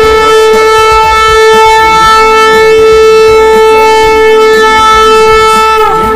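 A ram's-horn shofar sounded in one long, steady blast, its pitch sagging as it cuts off near the end.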